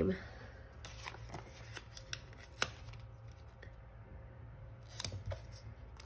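Faint paper handling: planner pages and sticker sheets being slid and pressed by hand, with scattered light clicks and rustles, the sharpest about two and a half seconds in and a few more about five seconds in.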